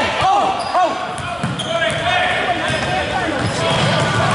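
Basketball bouncing on a wooden gym floor during live play, with players' and spectators' voices calling out across a large gym.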